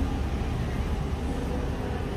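Street traffic noise: a steady low rumble of city traffic with no distinct single event.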